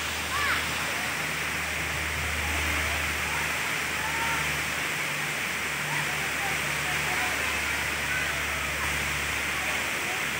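Steady rush of a waterfall cascading over rock terraces, with faint distant voices of people at the falls.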